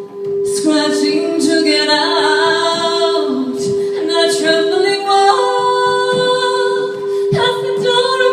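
A woman singing a slow, gliding melody live over a steady, slightly pulsing drone note that is held throughout. The voice comes in just under a second in, after a short pause.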